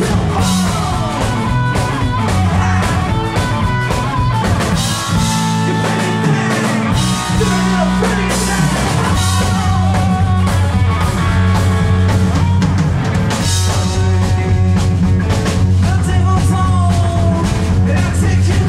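Live blues-rock band playing loudly: a male singer over electric guitar, bass and drum kit. The heavy low end drops away for a couple of seconds in the middle, then comes back.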